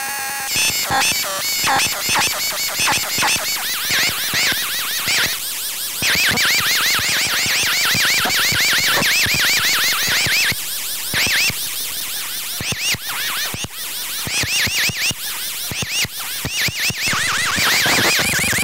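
Circuit-bent VTech Little Smart Tiny Touch Phone played by its knobs and switches: harsh electronic noise made of fast stuttering pulses and quickly repeating chirping pitch sweeps. The pattern shifts as the knobs are turned, with a steady run of repeating sweeps in the middle and a choppier, stop-start stretch near the end.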